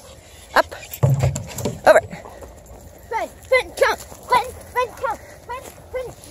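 A string of short, high-pitched vocal sounds in quick succession, thickest in the second half, with a brief low rumble about a second in.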